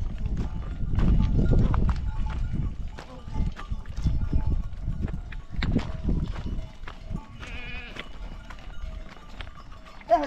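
A herd of goats moving over loose stones: many hooves clicking and clattering on rock, with goat bleats, one long wavering bleat about three-quarters of the way in. A low rumble is loudest in the first two seconds.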